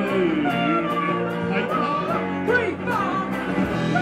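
Live rock band playing loud electric guitars and drums, with cymbal ticks about four a second and a voice singing in gliding, wordless lines over the top.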